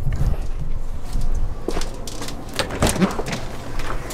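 Rustle of a handheld camera being carried, with footsteps and scattered knocks and clicks.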